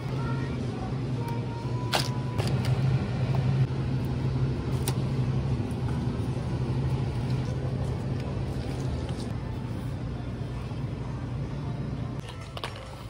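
Supermarket ambience: a steady low rumble and hum of the aisle, with a few sharp clicks from packages being picked up and handled.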